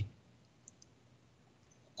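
A brief pause in a man's speech over a call: faint hiss of room tone, with two tiny clicks about two-thirds of a second in.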